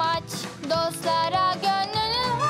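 A cartoon song: a high, childlike voice sings a bouncy melody in short notes over instrumental backing music.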